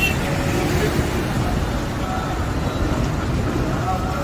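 Busy roadway traffic noise, a steady low rumble of passing vehicles, with voices in the background.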